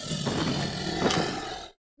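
A dragon roar sound effect: a harsh, noisy roar that fades and cuts off after about a second and three-quarters.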